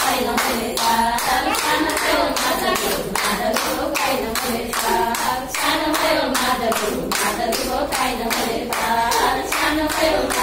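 Hands clapping in a steady, even beat to accompany women singing a Nepali teej folk song.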